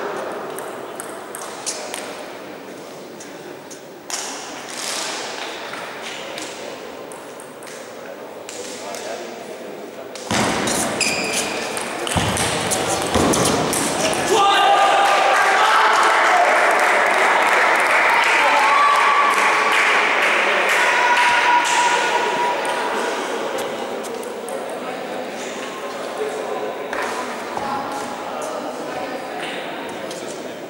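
Table tennis ball being struck by bats and bouncing on the table, sharp pings in a large hall. Voices and general hall noise rise and are loudest through the middle.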